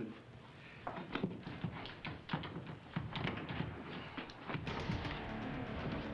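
Film soundtrack music with a run of sharp hits, some in quick pairs, and steady held tones coming in near the end.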